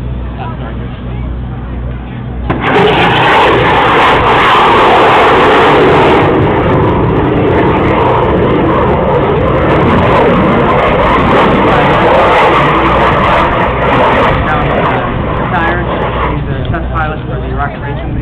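Rocket racing plane's restartable rocket engine firing overhead: a loud, rushing roar that starts suddenly about three seconds in and holds for some twelve seconds before easing off.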